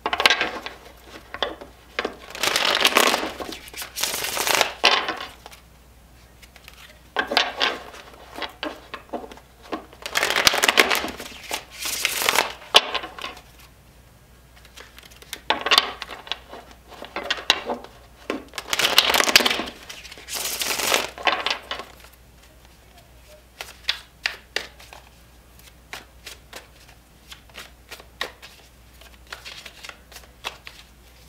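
A deck of tarot cards being shuffled by hand: several bursts of the cards swishing and slapping together, each a few seconds long. In the last third these give way to lighter, scattered clicks and taps of the cards.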